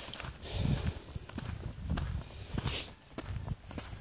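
Footsteps of a person walking over dry grass and a dirt track: irregular soft thuds with light crunching and rustling.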